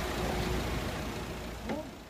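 Street noise with the low, steady rumble of a vehicle engine running, and a brief voice near the end; the sound fades down in the last moments.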